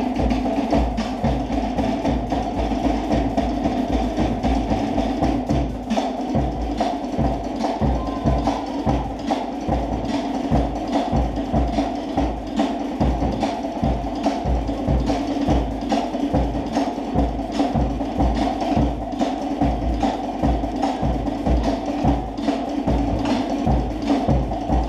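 Fast Polynesian dance drumming: sharp wooden knocks over low drum beats in a quick, steady rhythm.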